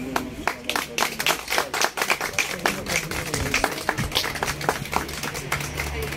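A small group of people clapping, individual claps distinct and irregular, as a ribbon is cut to open a shop.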